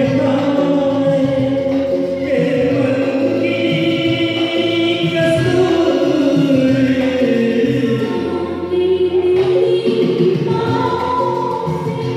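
Karaoke duet: a Hindi film song's backing track played over a PA, with singing into a handheld microphone over it.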